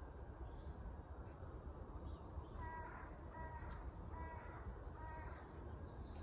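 A bird calling four times in quick succession, each call short and about a second apart, with a few faint high chirps, over a faint steady background hiss.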